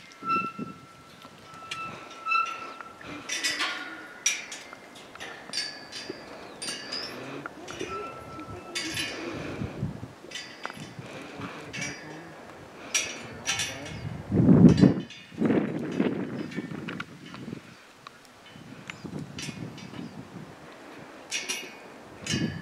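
Steel corral panels being fitted together: irregular metal clanks and clinks, with a pipe ringing on after a strike at the start and again about a third of the way in.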